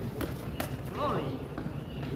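Sharp knocks from two boxers moving and exchanging in the ring, two clear ones in the first second and fainter ones after, with a brief shout about a second in.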